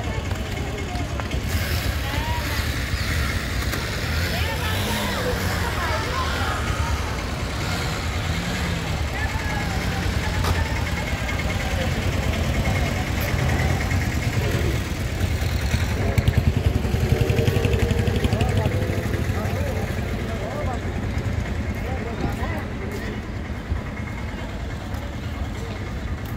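Outdoor street ambience: people talking in the background over a steady low rumble.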